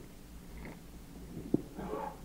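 A pause between spoken phrases: a steady low electrical hum, one sharp click about one and a half seconds in, and a faint soft noise near the end.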